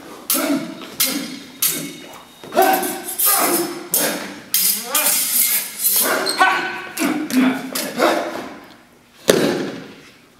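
Small-sword blades striking and ringing during a staged sword fight, mixed with the fighters' wordless shouts and grunts of effort and stamps on a wooden floor. A loud thump comes about nine seconds in.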